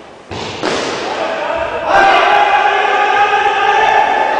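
A thud about half a second in, then a player's long, drawn-out shout from about two seconds in, held on one pitch, over the hall's general noise of indoor cricket play.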